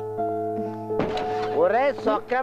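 Film background score of soft, sustained keyboard tones. A single thunk comes about halfway through, and then a voice calls out in drawn-out, wavering tones near the end.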